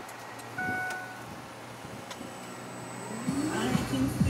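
A 2007 Ford F-150 converted to an electric motor being switched on: two short high beeps in the first second, a faint high whine from about two seconds in, then the electric motor spinning up to idle near the end with a low hum rising in pitch.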